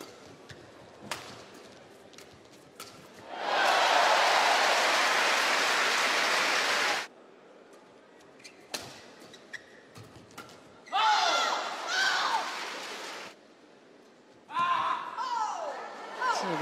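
Badminton arena sound: a few sharp racket hits on the shuttlecock, then a loud burst of crowd applause lasting about three and a half seconds that stops abruptly. Two shorter spells of crowd cheering with high rising and falling squeals follow in the second half.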